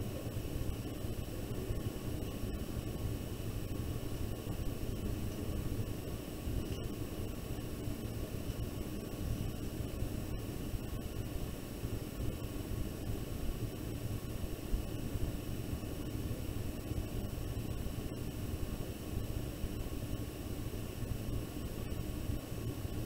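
Steady room tone: an even hiss over a low hum, with a few faint steady high whines and no distinct events.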